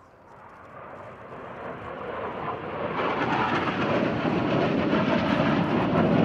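Three MiG-29 jet fighters flying past in formation: jet engine noise growing louder over the first three seconds, then holding loud.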